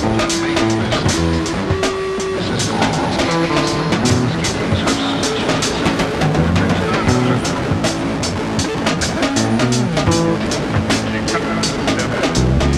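Lo-fi hardcore punk band recording: a fast, steady drum beat under instruments playing short, stepped notes.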